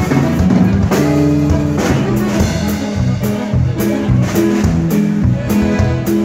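Live norteño band playing an instrumental passage: button accordion melody over bajo sexto, electric bass and drum kit, with a steady beat of drum strikes.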